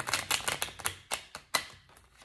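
A deck of tarot cards being shuffled by hand: a quick, uneven run of card clicks and flicks, with one sharper snap about one and a half seconds in.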